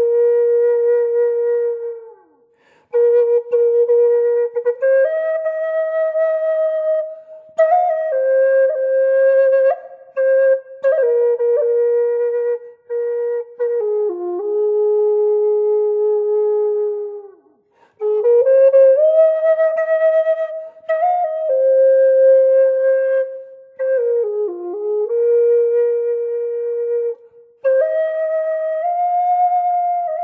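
F minor Native American flute in the Taos Pueblo style, by Russ Wolf, playing a slow melody that steps up and down the pentatonic minor scale, with held notes, some pitch bends and short ornaments where it stops to improvise. Its breaths leave brief gaps about two seconds in, near the middle and near the end.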